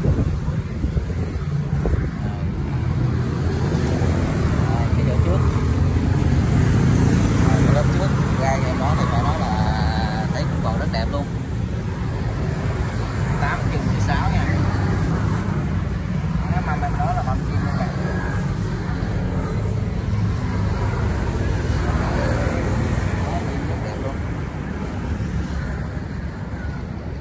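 An engine running steadily throughout, a continuous low drone.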